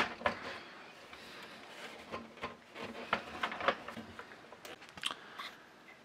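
Scattered light clicks, soft knocks and rubbing of a Commodore 64's plastic breadbin case being pressed shut and handled.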